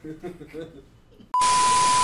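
TV static hiss with a steady high test-tone beep, the sound of a colour-bars 'no signal' glitch transition. It starts suddenly about a second and a half in, holds at one level for about a second and cuts off sharply.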